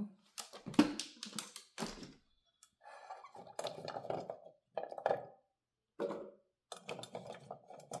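Carrot chunks being picked up from a ceramic dish and fed into a slow juicer: a run of short knocks and clunks in the first two seconds, then several separate bouts of clatter about a second long each.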